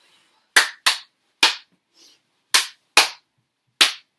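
Six sharp, loud smacks of hands striking skin, in irregular pairs and singles over about three seconds.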